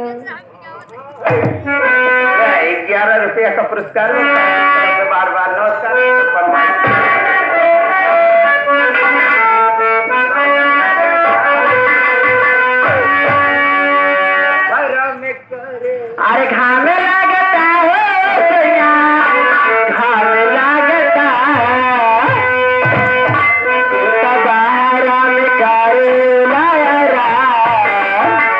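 Nautanki stage music: a singing voice over melodic instruments, with occasional drum strokes. It drops out briefly about a second in and again around fifteen seconds, then carries on.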